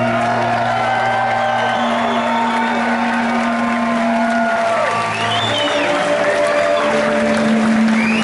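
Live rock band amplified in a concert hall, holding long sustained guitar and bass notes, while the crowd cheers and applauds. Rising-and-falling whoops or whistles from the audience come about five seconds in.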